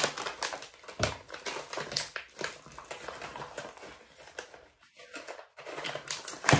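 Clear plastic bag crinkling and small plastic accessories clicking together as they are packed into it by hand: a run of irregular rustles and light clicks, easing off briefly about five seconds in.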